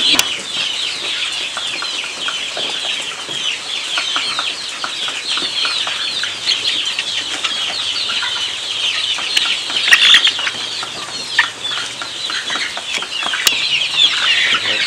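A flock of young joper chickens calling continuously: many overlapping short, high peeping calls mixed with clucks, loudest about ten seconds in.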